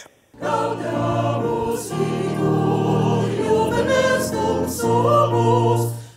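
A large mixed choir of men's and women's voices singing held chords in harmony. It comes in about half a second in and fades at the very end.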